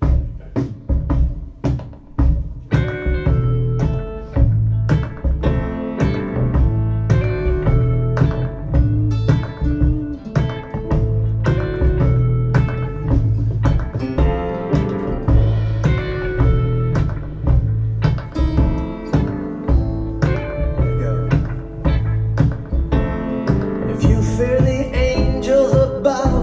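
Recorded song played back over a pair of bookshelf hi-fi loudspeakers in a listening room: a plucked acoustic guitar over a steady bass pulse, with brighter high sounds building near the end.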